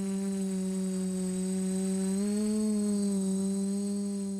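Quadcopter drone's propellers buzzing steadily, rising slightly in pitch about two seconds in, then settling back.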